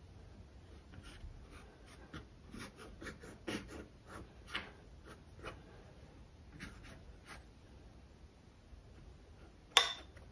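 A small paintbrush stroking and dabbing acrylic paint on a canvas: faint, irregular short scratches, with one louder sharp click near the end.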